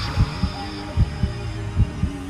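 Heartbeat sound effect in a suspense film score: low double thumps about every 0.8 s, three in all, over a faint sustained drone.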